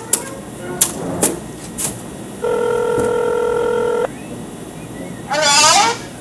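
Desk telephone being dialled: a few sharp keypad clicks, then a single steady ringback tone lasting about a second and a half. Near the end a high voice answers briefly.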